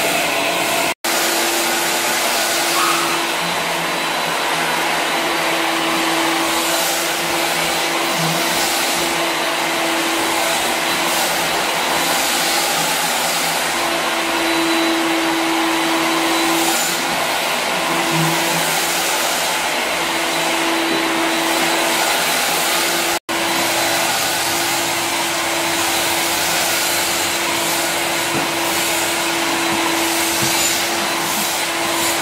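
Canister vacuum running steadily, sucking up sanding dust from a bare wooden floor through a long wand and floor nozzle, with a humming tone that comes and goes. The sound cuts out for an instant twice, about a second in and about 23 seconds in.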